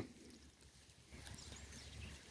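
Near silence in open air, with faint rustling and a few soft clicks from about a second in.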